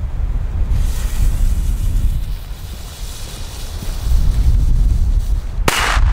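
A Roter Korsar firecracker with 1.5 g of flash powder: its fuse hisses for about four and a half seconds, then it goes off with one sharp bang near the end. Wind rumbles on the microphone throughout.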